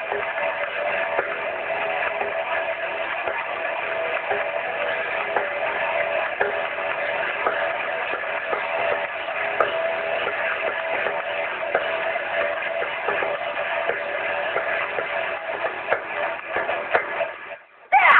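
Metal band playing live, a dense, steady wall of band sound with held notes. Just before the end the music drops away suddenly.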